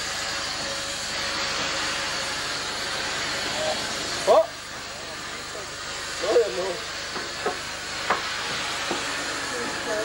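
Steady hiss of steam from No. 673 'Maude', a North British Railway 0-6-0 steam locomotive, moving slowly tender-first past at close range. Short squeals come about four and about six seconds in, with a few sharp clicks after.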